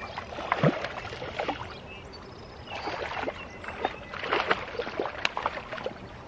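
A hooked walleye splashing at the water's edge as it is pulled in to the bank, in several irregular bursts of splashing.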